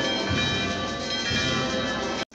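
Church bells ringing, repeated strokes with their tones ringing on and overlapping.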